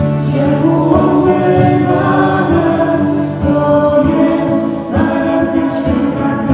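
A group of voices singing a Christian worship song together over sustained accompanying notes.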